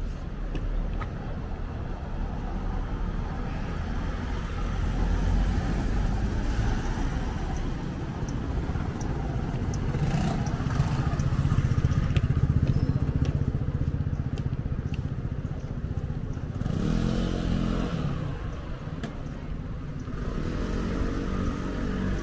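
City street ambience with traffic: a steady low rumble of vehicle engines, with one vehicle louder as it passes about halfway through. Passers-by talk briefly near the end.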